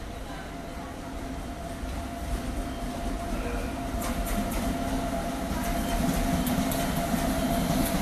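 WAP-7 electric locomotive and its passenger coaches running in on the rails, the rumble growing steadily louder as the train nears. Wheels click over rail joints from about halfway.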